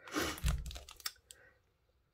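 Clear plastic stamp packets crinkling and rustling as they are handled, with a soft low bump about half a second in and a faint click a little after a second.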